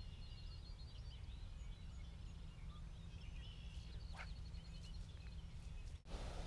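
Faint birds chirping over a low, steady wind rumble on the microphone.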